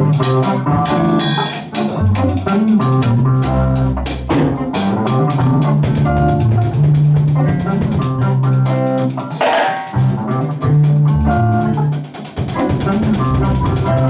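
A live band playing in a rehearsal room: electric bass guitar, electric guitar and drum kit keep a steady groove together.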